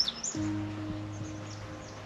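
Background music: a steady held low chord comes in about a third of a second in and sustains. A few faint high chirps sound at the start.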